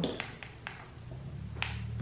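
A few faint clicks and taps, about four in two seconds, as fingers pick gummy candies off a plate and set them on the table. A low steady hum runs underneath.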